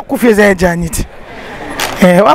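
A woman speaking into a handheld microphone at conversational pace. In a short pause about halfway through, a steady background noise rises before she speaks again.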